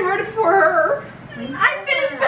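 Teenage girls' voices, talking and exclaiming excitedly with no clear words, with a brief lull a little past halfway.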